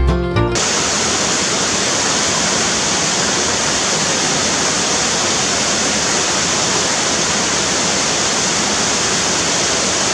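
Small waterfall cascading into a rocky pool: a steady, even rush of falling water. Music cuts off abruptly about half a second in, leaving only the water.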